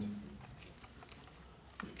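A few faint, light clicks of keys being pressed on a laptop keyboard.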